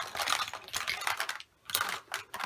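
Makeup products (lipstick tubes, compacts and brushes) being shuffled around by hand, clicking and clattering against one another in a quick run of light rattles, with a short pause and a second brief clatter near the end.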